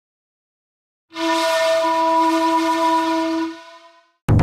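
A single sustained horn blast, a sound effect on the opening soundtrack. It starts about a second in, holds one steady pitch for about two seconds and then fades out.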